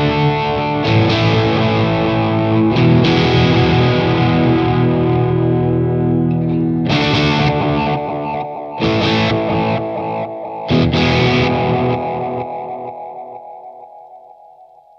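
Overdriven Fender Stratocaster chords played through a Gokko Magrane analog delay pedal and a Boss Katana amp, a few strummed chords ringing out with echo repeats behind them. In the last few seconds the playing stops and the repeats die away, growing duller and quieter as they fade.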